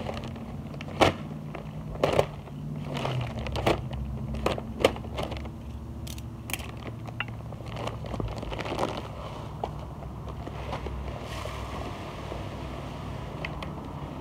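A paper bag of granular lawn fertilizer being handled and opened, with scattered sharp clicks and crackles. Near the end, granules start to pour into a plastic spreader hopper.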